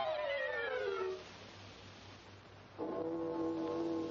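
Orchestral cartoon score: a falling glide in pitch over about the first second, then a quieter stretch of hiss. About three seconds in, a held brass chord comes in.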